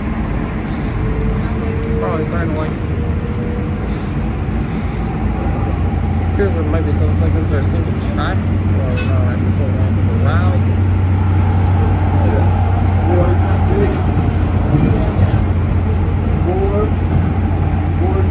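Kinkisharyo P3010 light rail car running along the track, heard from inside the passenger cabin: a steady rumble, with a low hum that comes in about five seconds in and holds. Indistinct passenger voices run underneath.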